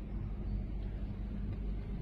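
Steady low rumble with a faint even hum, the background noise of a large hall. No distinct event stands out.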